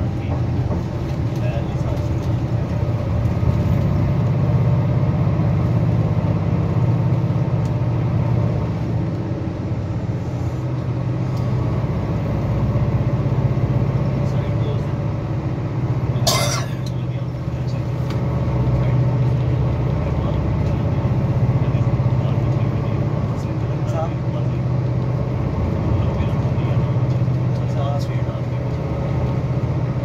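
A moving road vehicle heard from inside: a steady low engine and road drone while driving. A single sharp knock comes about halfway through.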